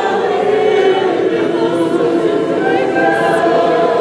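Church congregation singing together in worship, with long held notes.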